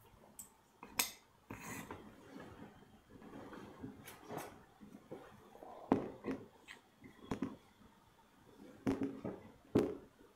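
A wooden carving block and tools being handled on a workbench: scattered knocks and taps with rustling between, the loudest knocks about six seconds in and just before the end.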